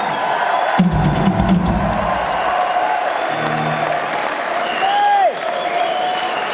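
Live rock band on stage between songs over a cheering arena crowd. A heavy drum-and-bass hit lands about a second in, a low bass note is held around the middle, and a pitched note slides downward near the end.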